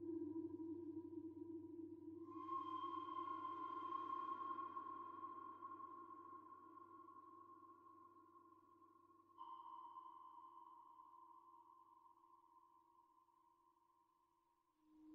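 Mutable Instruments modular synthesizer playing slow, sustained tones. A low held tone fades while a higher chord of tones comes in about two seconds in, and another starts suddenly about nine seconds in; each one fades away slowly.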